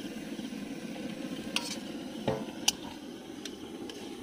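Metal spatula stirring and mashing spiced potato in a hot metal kadai over the fire, the oil sizzling steadily. A few sharp clinks sound as the spatula strikes the pan.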